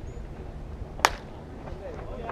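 A single sharp crack of a baseball bat hitting a pitched ball about a second in, with a short ring after it.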